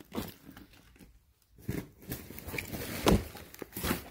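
Backpacks being pulled out and handled: several short bursts of fabric rustling and crinkling, the loudest a little after three seconds in.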